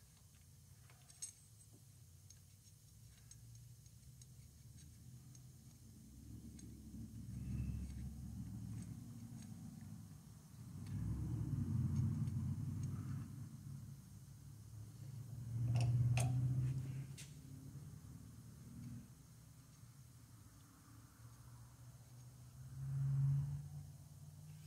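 Quiet low rumbles that swell and fade several times as a milling machine's table is raised toward a stopped end mill, with a few light metallic clicks from a flat tool bit being slid under the cutter as a feeler.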